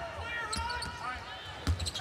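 Basketball dribbled on a hardwood court: a run of dull thuds, the loudest near the end, over the background noise of a large arena.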